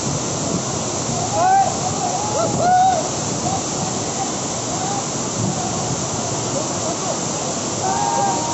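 A high waterfall pouring down a rock face, with swollen, muddy water rushing over boulders: a steady, even rush throughout. Voices call out over it, loudest about one and a half and three seconds in.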